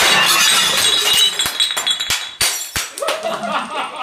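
Glass breaking: a loud crash with a ringing tone, then a scatter of sharp clinks for about two seconds as pieces land and settle.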